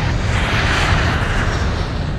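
Airplane fly-by whoosh sound effect: a rushing noise that swells and then fades away over about two seconds.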